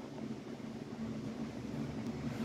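Steady low background hum with faint hiss, a few low tones holding level throughout and no distinct events.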